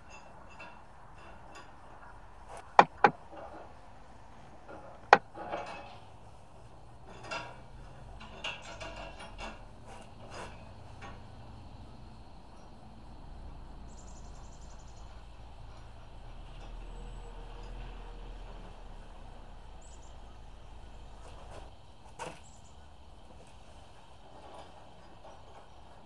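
Scattered metal clicks and clinks of nuts, clamp hardware and hand tools as the nuts are fitted and tightened on the U-bolt clamps holding a utility trailer's axle to its leaf springs. The loudest are three sharp clicks a few seconds in, with a handful of fainter ones after.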